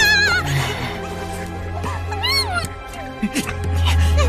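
A woman's shrill, wavering scream of 'Murder!' trails off at the start, and a second short high cry comes about two seconds in. Under both runs background music with low sustained bass notes.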